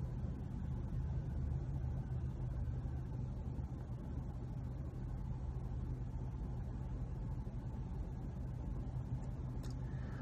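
A car running, heard from inside the cabin: a steady low hum.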